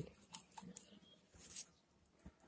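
Faint handling noises: a few soft clicks and a brief rustle about one and a half seconds in, as a small plastic water bottle is handled and set down on the soil.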